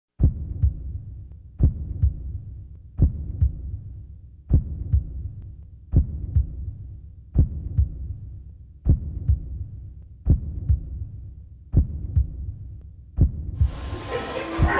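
A deep, heartbeat-like double thump, a strong beat followed by a softer one, repeating about every one and a half seconds, ten times over.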